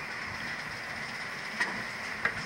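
Steady hiss with a faint high whine through it, and one light click about one and a half seconds in.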